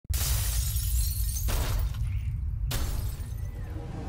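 Intro sound effects: three sudden crashing hits, each fading out, over a steady deep rumble.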